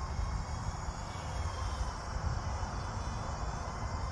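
Uneven, low wind rumble on the microphone, with faint crickets chirping steadily in the background.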